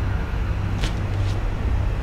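Steady low rumble of a locomotive engine heard from inside the cab, with two short clicks about a second in.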